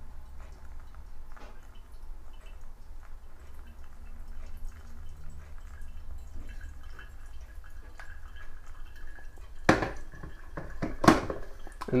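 Hot water poured in a thin, gentle stream from a gooseneck kettle onto wet coffee grounds in a Hario V60 paper filter, a soft steady trickle. Two sharp knocks come near the end.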